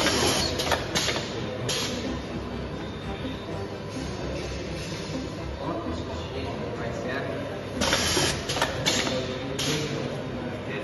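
Volumetric pasta depositor machinery running with a steady hum, broken by several short hissing bursts as it cycles: two in the first two seconds and a cluster near the end.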